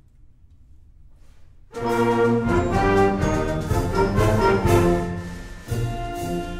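High school symphonic band opening a concert march: faint room noise, then the full band comes in loudly with brass about two seconds in and plays on with sharp accented hits.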